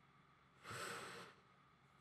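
A single soft breath, a short hiss lasting under a second about halfway through, against near silence.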